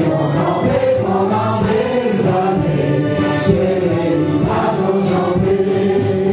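Traditional folk dance music: a melody played over a steady held drone.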